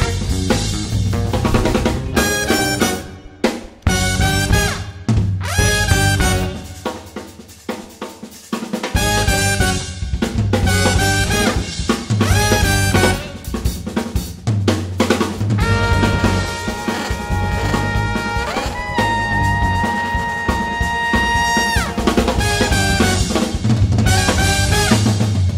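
Live brass band of trumpet, trombone and saxophone playing jazzy dance music over a drum kit, with the drums out front. About two-thirds of the way through, the horns hold long notes for several seconds, then cut off shortly before the end.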